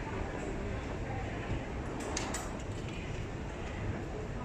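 Steady rumbling hum of a London Underground escalator running, mixed with the noise of the station around it, with a few sharp clicks about two seconds in.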